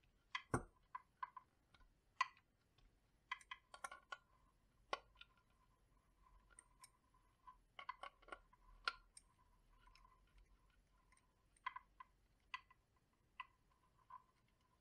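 Irregular light clicks and knocks as an adjustable steel wrench is handled against a plastic project box, working a nut loose, with the sharpest knocks in the first half and a few more near the end. A faint steady whine sits underneath from about three seconds in.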